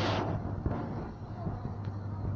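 Supermarket background: a steady low hum, with a hiss dying away at the very start and a few faint clicks.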